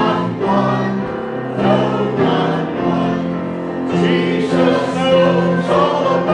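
Mixed church choir of men and women singing a hymn together in several parts, holding each note for about a second.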